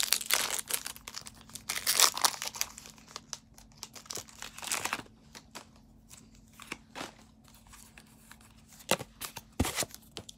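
Foil Pokémon TCG booster pack wrapper crinkling and tearing as it is opened, in bursts over the first five seconds, then a few light clicks and taps as the cards are handled.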